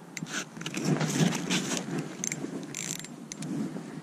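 An ice-fishing rod's small spinning reel being handled and turned close by, with a run of irregular clicks and rustles, busiest about a second in.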